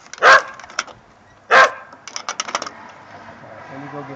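A dog barks twice, about a second and a half apart, demanding its food. A quick run of light clicks follows.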